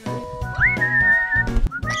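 Background music with a steady beat and a whistled melody: a whistled note rises and is held with a slight waver, and further short whistled notes follow near the end.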